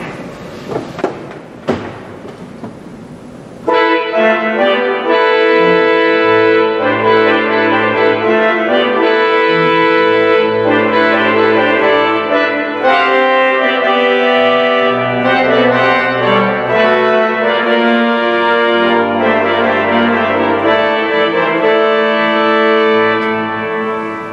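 Church pipe organ playing a loud fanfare on its trumpet reed stop, full chords over deep pedal bass notes, starting about four seconds in after a few clicks and knocks at the console. The trumpet notes are freshly tuned and sound in tune.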